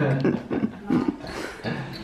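Laughter in short, broken bursts.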